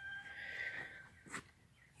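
A rooster crowing in the distance, its long held note fading out about a second in. A short faint click follows.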